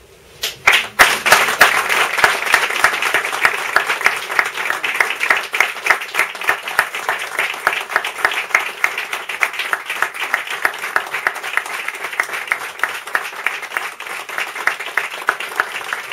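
Audience applauding: a few first claps, then dense, steady clapping from about a second in.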